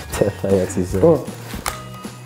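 A few short voiced sounds from a person, over steady background music, with one sharp click near the end.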